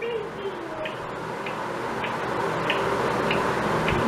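Faint, evenly spaced light clicks, about one every half second, over a low steady hiss, as small plastic spoons work in the mouths of Baby Alive dolls.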